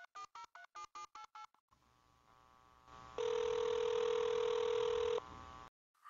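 Telephone line as the Freedom Alert medical-alert system auto-dials a programmed contact: a rapid run of touch-tone digits, about seven a second, ends about one and a half seconds in. After a short hiss of open line, one ringback tone about two seconds long sounds, meaning the called number is ringing.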